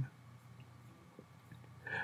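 Near silence: faint room tone in a pause between spoken sentences, with a man's voice trailing off at the very start and picking up again near the end.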